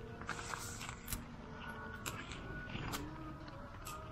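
Rice paddy herb stems being cut by hand with a knife: a scatter of small, sharp clicks and snips at an uneven pace.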